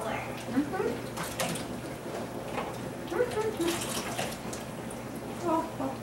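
Kitchen faucet running in a steady stream into a small plastic bucket held under the tap, filling it with water.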